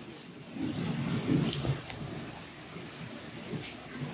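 Water from a garden hose spraying onto a car being washed: a soft, steady hiss.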